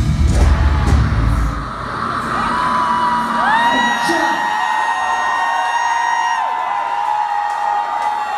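Live metal band playing loud drums and guitars, cutting off about a second and a half in; the crowd then cheers with long, high held screams and whoops.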